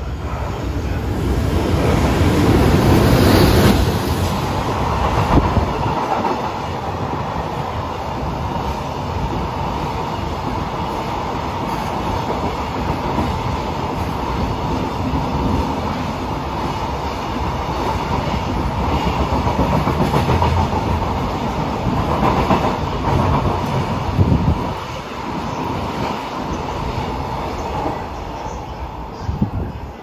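JR Freight EH500 electric locomotive passing through without stopping, followed by a long string of Koki container flatcars, most of them empty, clattering over the rail joints. It is loudest as the locomotive goes by in the first few seconds, then settles into a steady rattle of wagons that eases off near the end.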